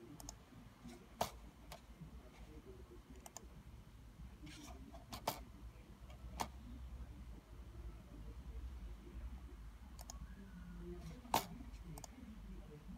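Computer mouse clicks, single sharp clicks a few seconds apart with the loudest near the end, over a low steady hum.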